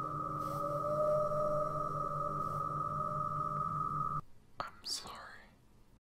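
A steady electronic drone of held tones cuts off suddenly about four seconds in. A brief whispered voice with sweeping pitch follows and fades away.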